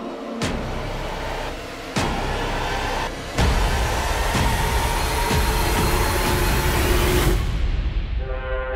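Cinematic trailer score and sound design: two sharp hits, then a loud swell of dense noise over a deep rumble that builds and cuts off abruptly near the end.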